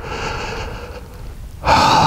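A man breathing hard and out of breath after a dirt bike crash: a long fading exhale, then a loud sharp gasping breath in near the end.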